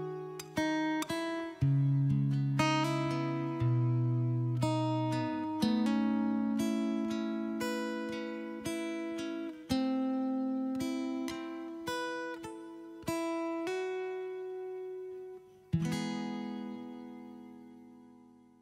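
Acoustic guitar playing the closing instrumental bars alone: single picked notes and chords about once a second. Near the end a last strummed chord rings out and fades away.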